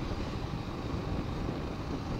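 Steady riding noise from a TVS Apache RR 310 sport motorcycle cruising at about 50 km/h: an even rush of wind and engine, with no distinct engine note standing out.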